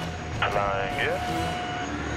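Helicopter cabin hum, steady and low, with a short burst of voice about half a second in.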